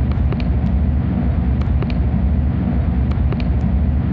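Field recording of a rapid-transit train in motion: a steady low rumble under a haze of noise, with scattered sharp clicks.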